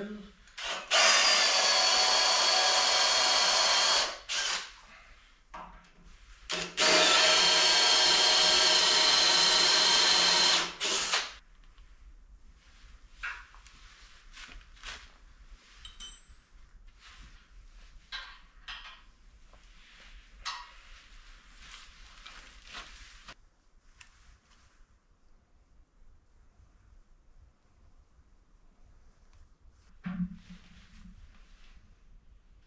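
Cordless drill drilling into the steel fork carriage in two steady runs, about three and four seconds long, the second starting about seven seconds in. Afterwards come scattered light clicks and knocks.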